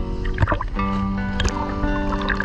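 Background music with long held chords. About half a second in, a brief rush of water splashing at the surface is heard under the music.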